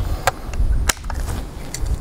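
Anschütz Hakim air rifle's action being worked by hand while reloading: a few sharp mechanical clicks, the strongest just under a second in, over a low rumble.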